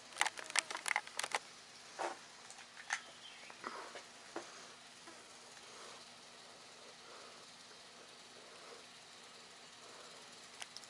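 Handling noise: a quick run of sharp little clicks and taps, then a few more spaced about a second apart, as the camera and pistol are moved and settled into a two-handed grip. After about five seconds only a faint background hiss remains.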